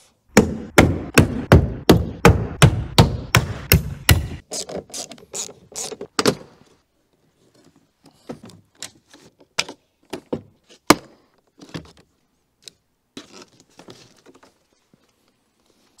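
A fast, even run of thuds, about four a second, for the first four seconds, then scattered sharp clicks and pops: a car door trim panel being pried off with a plastic trim tool, its plastic clips letting go.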